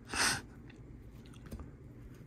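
Trading cards handled by hand: a short swish near the start as a card slides off the stack, then a few faint soft ticks as cards are set down.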